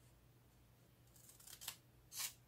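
Scissors cutting construction paper, faint: quiet at first, then a short cut that ends in a sharp snip near the end.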